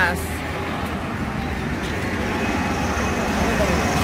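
Road traffic passing on a wide multi-lane road: a steady rush of car and tyre noise that grows gradually louder as vehicles approach.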